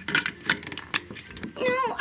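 A few light clicks and knocks of plastic toys and dolls being handled on a wooden floor, then a child-like voice says "no" near the end.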